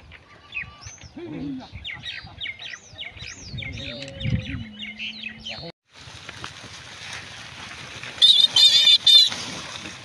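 Birds chirping with a few short human calls, then a cut to steady rustling as pigs root through wet water hyacinth. About eight seconds in, a burst of loud, wavering pig squeals lasts about a second.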